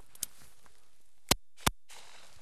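Two shotgun blasts about a third of a second apart, one from each of two shooters firing at the same flying pigeon. A much fainter crack comes about a quarter second in.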